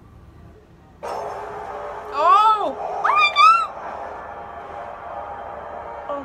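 A low, steady film score swells in about a second in. Over it, a woman gives two loud, high-pitched excited squeals, each rising and falling in pitch, a second apart.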